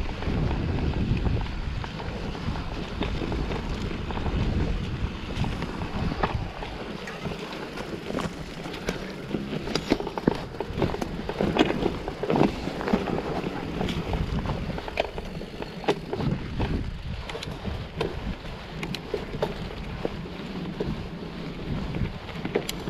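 Mountain bike rolling along a dirt singletrack: wind rumbling on the microphone and tyre noise, heaviest in the first third, then frequent sharp clicks and rattles from the bike over bumps.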